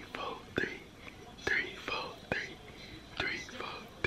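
A man whispering in short phrases close to the microphone, with a few sharp clicks among them.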